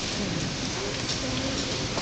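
Audience applauding, a dense, continuous patter of many hands clapping.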